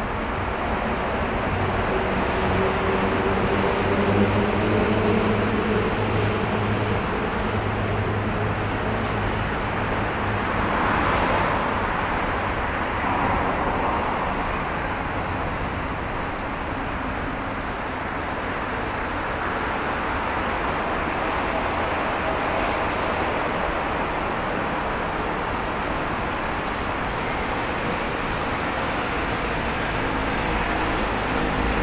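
Road traffic: a steady wash of passing vehicles. A vehicle engine hums low through roughly the first nine seconds, and another vehicle passes about eleven seconds in.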